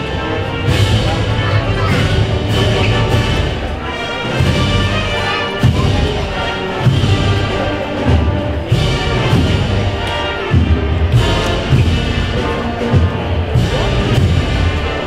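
A Spanish brass-and-wind band (banda de música) playing a processional march: brass and woodwinds sustain the melody over repeated bass drum beats.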